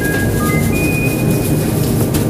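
Background music: a melody of held high notes stepping from pitch to pitch over a dense, steady low accompaniment.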